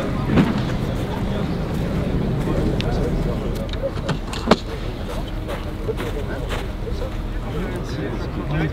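Steady outdoor background noise with indistinct voices, and one sharp knock about four and a half seconds in.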